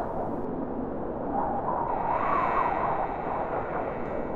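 Steady rushing wind noise, with a faint wavering howl coming in about a second and a half in.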